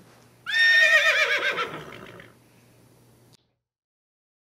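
A horse whinnying: one high, quavering call that falls in pitch over about two seconds, then the sound cuts off abruptly.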